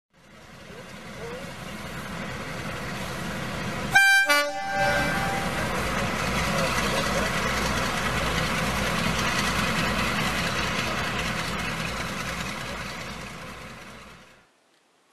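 Diesel locomotive sounding a two-tone horn about four seconds in, a higher note then a lower one. The steady rumble of the locomotive running follows, fading in at the start and fading away near the end.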